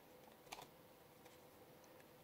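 Very faint room tone with a short burst of light clicks about half a second in, from baseball trading cards being shuffled by hand to bring up the next card.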